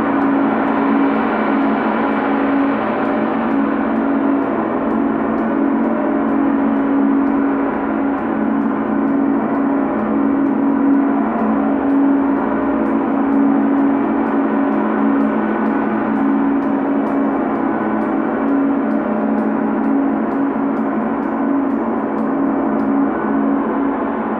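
A large Chau gong played continuously with a soft felt mallet, giving a steady, dense wash of overlapping tones with a strong low hum and no single strike standing out.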